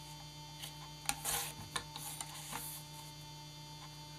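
Envelope paper being handled and slid on a plastic paper trimmer: a short scratchy rustle about a second in, a fainter one later, and a few light clicks, over a steady electrical hum.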